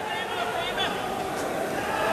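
Indistinct voices and chatter from a crowd in a large sports hall, with no single clear sound standing out.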